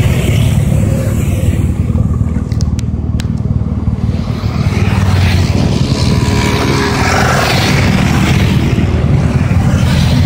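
Motorcycles riding at road speed: a loud, steady engine rumble mixed with rushing road and wind noise.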